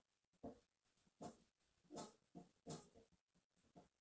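Near silence, with about six faint, short sounds scattered through it, one every half second to a second.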